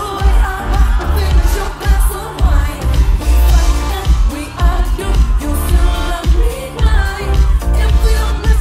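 Live pop song: a woman sings into a microphone over a band and backing track with a steady beat and heavily boosted bass.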